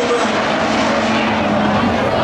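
Pack of hobby stock race cars running at speed on a dirt oval, their engines blending into one loud, steady drone whose pitch rises slightly near the end.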